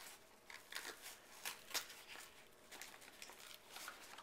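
Faint rustling, scraping and tearing of a taped cardboard mailer being pulled open by hand, broken by a few short sharp crackles.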